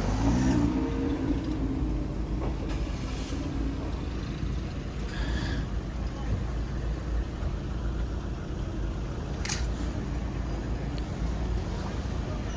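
Steady low rumble of cars and traffic with indistinct voices in the background, and a single sharp click about nine and a half seconds in.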